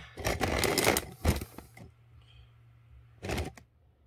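Rustling and scraping handling noise for about two seconds as the phone camera is set in place beside a paper towel, then a short rustle a little after three seconds.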